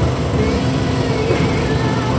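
Steady low background rumble, with faint voices in the distance.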